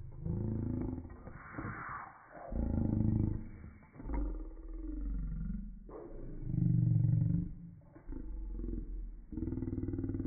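Voices played back in slow motion, pitched far down into deep, drawn-out sounds whose pitch bends slowly up and down. A brief noisy rush comes about a second and a half in.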